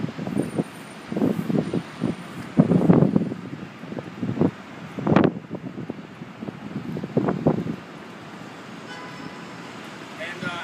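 Wind buffeting the microphone in irregular low gusts over a steady hum of city traffic, with one sharp gust about five seconds in; the gusts die down in the last couple of seconds, leaving the traffic hum.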